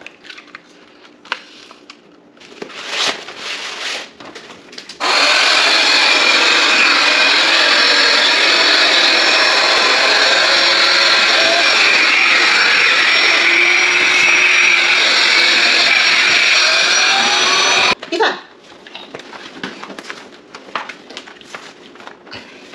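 Small handheld electric air pump running steadily as it inflates an air mattress. It switches on suddenly about five seconds in and cuts off just as suddenly about thirteen seconds later. Light clicks and rustles of plastic parts being handled come before and after it.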